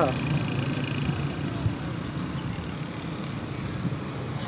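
Road traffic: a motor vehicle's engine hum fades over the first second, leaving a steady, even background rush of traffic.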